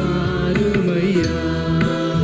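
A Tamil Christian worship song played live by a small band: sung vocals over keyboard and bass guitar, with a couple of cajon hits.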